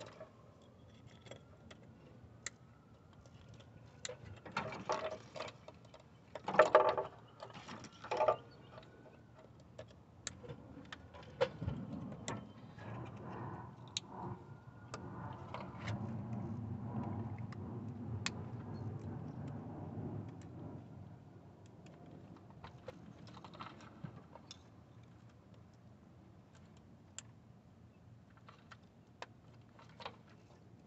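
Plastic electrical connectors and their locking tabs clicking and rattling as they are pushed onto the ignition coils and the wiring harness is handled over the valve cover. The clicks are scattered and faint, with a few louder rattling bursts in the first third, and a faint low rumble in the middle.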